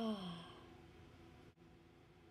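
A voice lets out a short, falling "oh" like a sigh, then near silence.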